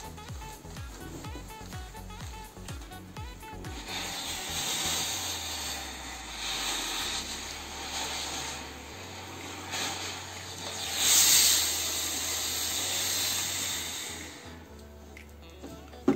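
Fakir Verda steam-generator iron releasing steam in repeated hissing bursts onto a shirt. The bursts start about four seconds in and are loudest about eleven seconds in, over background music.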